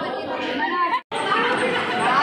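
Many people talking and chattering at once in a large hall, with a brief complete dropout of the sound about a second in.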